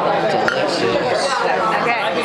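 Several diners talking at once, a steady hum of overlapping restaurant chatter with no single voice standing out.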